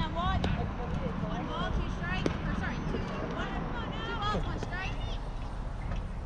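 Distant voices of softball players and spectators chattering and calling across the field, high-pitched and indistinct, with two sharp knocks, one about half a second in and one a little after two seconds.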